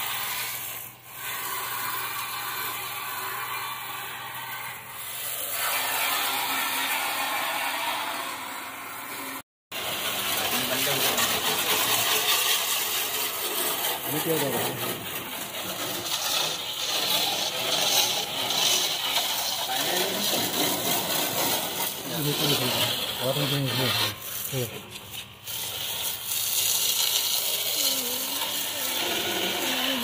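Water jet from a Proffix 12 V DC portable pressure washer spraying onto wet concrete and a car's wheel and wheel arch, a steady hiss of spray. The sound cuts out completely for a moment about ten seconds in.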